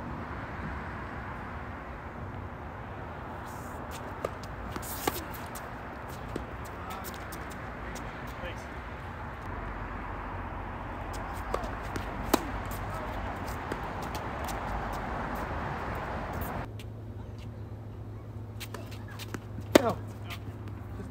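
Tennis balls struck by racquets: a few sharp pops scattered through the rally, the loudest near the end, over a steady background hiss.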